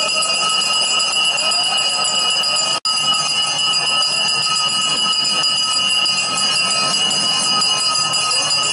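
Temple bells ringing continuously in a steady, many-toned clangour during a Hindu puja, with the sound cutting out for an instant about three seconds in.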